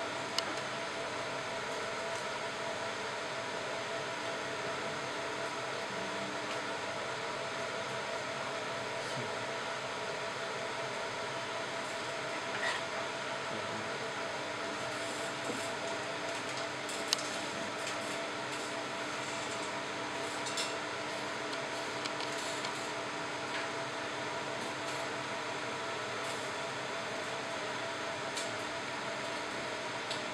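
MOPA fiber laser marking machine running a steady, even hum while it engraves lettering into a metal plate, with a few faint clicks.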